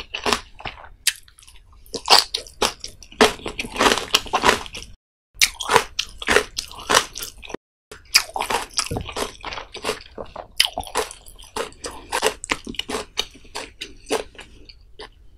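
Close-miked eating: crisp biting and crunching with wet chewing and mouth sounds, as rapid dense clicks. The sound drops to complete silence twice, briefly, near the middle.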